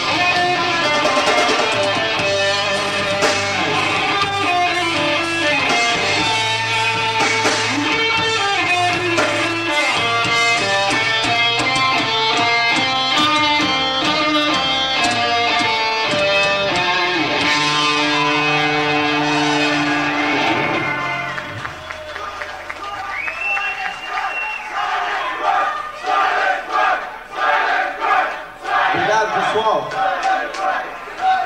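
Live band playing the closing bars of a song on distorted electric guitars and bass, ending on long held chords about twenty seconds in. The audience then cheers and claps.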